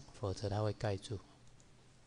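A man speaking for about the first second, then low room hiss, with a few light clicks typical of a computer mouse.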